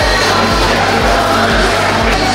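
Background music with a steady beat, about two bass pulses a second.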